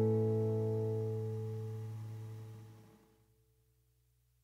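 Closing music: one sustained chord rings on and dies away, fading to silence about three seconds in.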